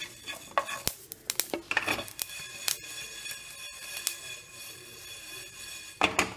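Fennel seeds being dry-roasted and stirred in a metal pan: a utensil scrapes and taps against the pan as the seeds rustle. The stirring is busiest in the first two or three seconds, then lighter.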